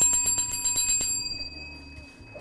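A small chrome bicycle bell rung by hand: a fast trill of strikes lasting about a second, after which the bell rings on and fades away.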